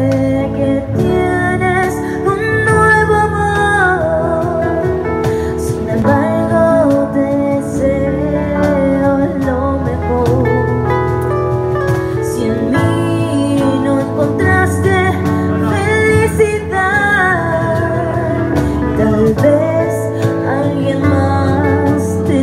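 A woman singing a song into a microphone over instrumental accompaniment with a steady bass line.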